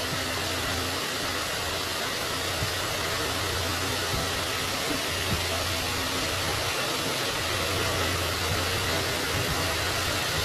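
Steady whirring hiss with a low, constant hum, unchanging throughout: an electric fan running in the room.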